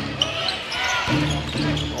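Live basketball play in an arena: a ball bouncing on the court over a steady background of arena music and voices.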